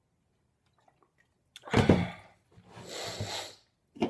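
A man coming up for air after a long swig from a plastic bottle: a short, loud voiced gasp about halfway through, then a long breathy exhale lasting about a second.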